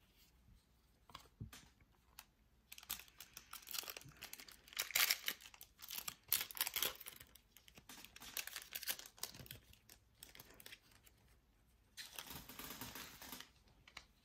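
Foil trading-card pack wrapper being torn open and crinkled, in irregular crackling bursts over several seconds, with a second short run near the end.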